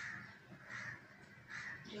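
A bird calling three times, short calls about three-quarters of a second apart.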